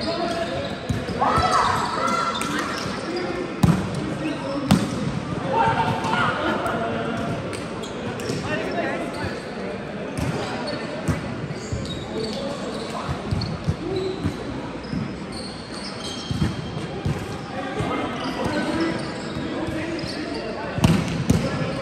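Indoor volleyball being played in a large hall: several sharp hits of the ball, with players' short shouts and calls in between, all carrying a hall echo.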